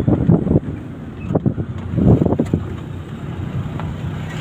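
Wind buffeting the microphone at a moving vehicle's open window, over the vehicle's low running rumble. The gusts are uneven and loudest about two seconds in.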